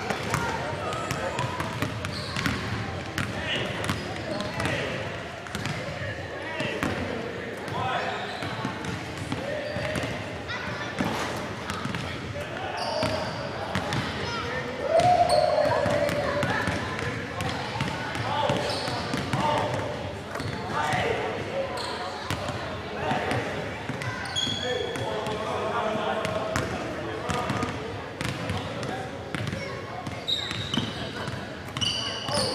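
Basketballs bouncing on a hardwood gym floor, short knocks scattered through, under steady talk from people in a large gymnasium.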